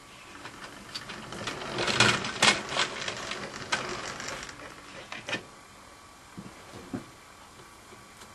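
Irregular mechanical clicking and rattling, loudest about two seconds in and dying away after about five seconds, with a couple of isolated clicks near the end.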